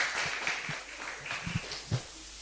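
A pause in a man's speech into a handheld microphone, filled with a few faint low knocks of the microphone being handled, the loudest just before the end.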